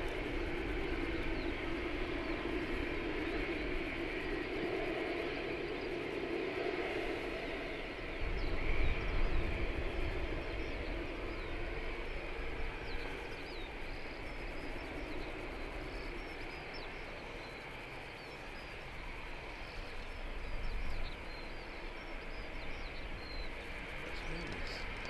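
Airbus A380 jet engines running as the four-engined airliner rolls slowly past and away along the runway, a steady jet roar that eases off a little as it recedes, with low rumbles of wind on the microphone twice.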